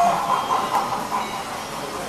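O gauge model steam locomotive's sound effects: a steam hiss with chuffing as it runs, loudest in the first second and then easing off.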